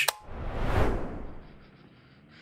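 A whoosh transition sound effect: a swell of noise that rises and fades away over about a second.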